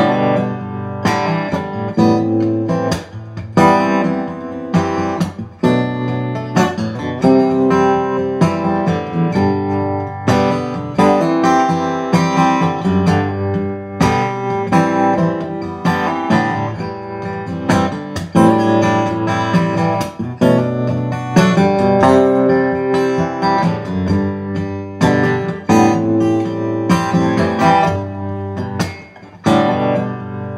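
Gibson J-45 acoustic guitar, its LR Baggs Anthem SL pickup played through a Fishman Loudbox Mini acoustic amp, strumming chords in a steady rhythm as a backing part being recorded into a looper.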